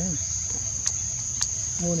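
Insects droning in one steady high-pitched tone, with two brief faint clicks in the middle.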